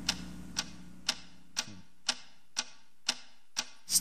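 Steady ticking, about two ticks a second, over a low steady hum.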